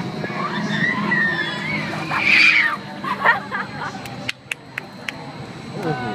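Riders screaming on a swinging-arm carnival thrill ride, with the loudest high scream about two seconds in, over fairground crowd babble and music. A few sharp clicks come near the end.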